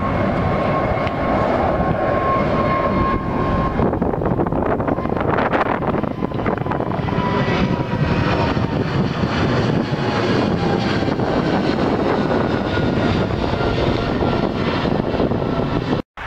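Thai Airways Boeing 777's twin turbofan engines at climb power as the jet passes overhead just after takeoff: a loud, steady jet roar with a faint whining engine tone that slides slowly lower in the second half as the plane moves away.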